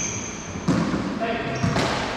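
A paddleball rally in an enclosed court: one sharp, loud ball impact about two-thirds of a second in, ringing off the court walls, with high sneaker squeaks on the hardwood floor near the start.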